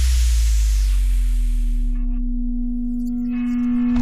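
Sound design for a TV channel's content-warning card: a deep low rumble fades away while a steady ringing tone comes in and holds. A fresh loud hit comes right at the end.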